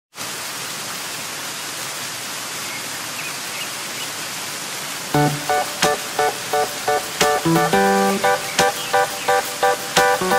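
Steady rushing of a waterfall; about halfway in, background music of plucked string notes comes in over it and carries on.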